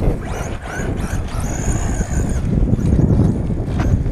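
RC short-course truck driving on gravel, its motor whining and shifting in pitch as it speeds up and slows, over heavy wind noise on the microphone.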